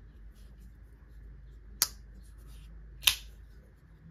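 Arcane Design Preytheon folding knife (S35VN blade, G10 handle) being worked open and shut in the hand: two sharp clicks a little over a second apart as the blade snaps closed and opens again.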